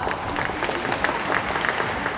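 Scattered applause, many separate hand claps close together.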